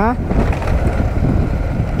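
Motorcycle engine running under way, with steady rumble and wind noise on the camera microphone as the bike rides from tarmac onto a rough gravel road.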